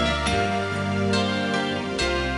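Instrumental band music without singing: held keyboard chords over low bass notes, with a new chord about a second in.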